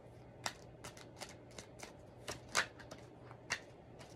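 A tarot deck being shuffled by hand, the cards snapping together in a string of sharp, irregular clicks, the loudest about two and a half seconds in.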